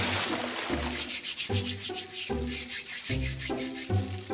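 Cartoon sound effect of quick rhythmic rubbing or scrubbing, several strokes a second, over low repeating background music notes.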